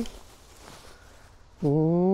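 Quiet outdoor background, then about one and a half seconds in a woman's drawn-out "ohh" exclamation, pitch rising slightly, as a tossed bean bag flies toward the catcher.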